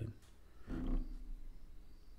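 A man's short, low wordless vocal sound, like a low hum, about a second in, with his breath rumbling on a close microphone.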